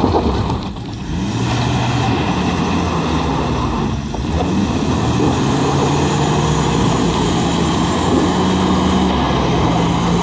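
Two pickup trucks' engines revving hard under load in a tug of war, with tyres spinning and scrabbling on loose dirt. The engine note holds high and shifts in pitch, dipping briefly about a second in and again about four seconds in.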